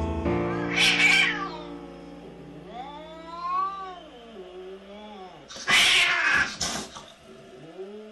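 Domestic cat yowling in long, wavering low growls at a plush tiger toy, with loud hisses about a second in and again around six seconds in. Background music fades out over the first two seconds.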